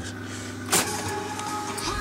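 Grundig TK431 reel-to-reel tape recorder: a sharp mechanical clunk from a control key about three-quarters of a second in, then the machine running with steady held tones.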